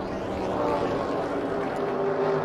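NASCAR Cup Series stock cars' V8 engines running at racing speed, a steady drone of several pitches at once.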